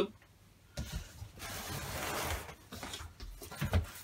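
Cardboard box and packing rustling and rubbing as hands work inside it, loudest about two seconds in, with a couple of soft knocks near the end.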